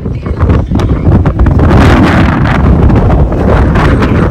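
Wind blowing hard across the microphone: a loud, uneven rush that grows stronger about a second in.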